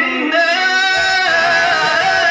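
A male qari chanting Qur'an recitation in a melodic tajweed style into a microphone. It is one long, held vocal line: ornamented lower notes step up about a third of a second in to a higher note that is held steady.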